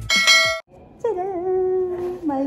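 A short, bright bell-like ding from a subscribe-button animation sound effect. After a short gap, about a second in, a long held vocal call with a slightly wavering pitch begins and carries on.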